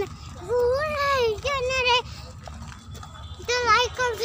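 Children's high-pitched voices calling out in drawn-out, sing-song tones: a long rising-and-falling call about half a second in, then shorter calls near the end, over a low steady rumble.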